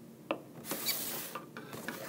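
A hand handling a cardboard toy box on a table: a small click, then a brief rubbing, scraping sound as the box is gripped and slid, with a couple of light knocks.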